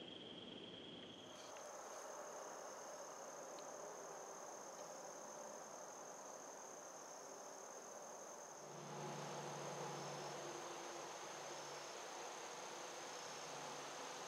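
Insects trilling steadily in woodland, a faint continuous high-pitched tone whose pitch jumps higher about a second in. A faint low hum joins about two-thirds of the way through.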